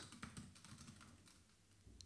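Faint typing on a computer keyboard: a quick run of light key clicks that thins out towards the end.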